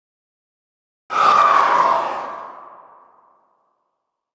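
An edited-in whoosh sound effect that starts suddenly out of silence about a second in and fades away over the next two seconds.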